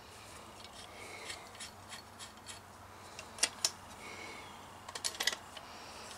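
Folding shovel being unfolded by hand: scattered light metal clicks and scrapes from the blade and hinge, with two sharp clicks a little past halfway and a few more near the end.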